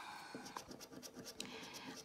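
A coin scraping the coating off a scratch card's play area: a quick series of faint, short scrapes.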